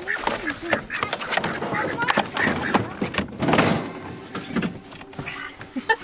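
Knocks and thumps of people climbing into a side-by-side utility vehicle's cab, with indistinct voices; a louder thud comes a little past the middle.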